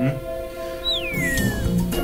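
Background music with held notes, and about a second in a single high tone that falls smoothly in pitch over most of a second, an added sound effect.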